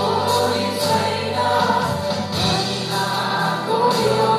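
A live worship band playing a Nepali Christian song: several voices singing together in Nepali over keyboard and guitar accompaniment, running steadily.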